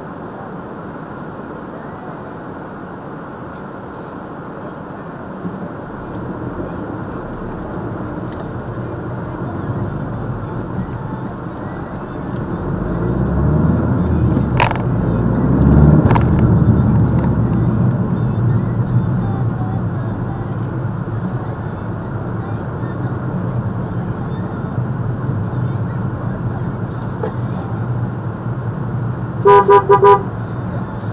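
Car engine and road noise heard from inside the cabin as the car pulls away and drives on, growing louder to a peak midway and then settling to a steady drone. A car horn honks briefly near the end.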